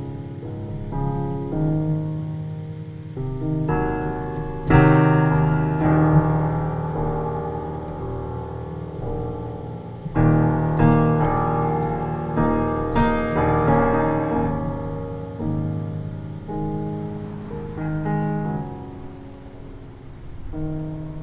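Piano music with chords and single notes struck one after another, each ringing out and fading. The strongest chords come about five seconds in and again about ten seconds in.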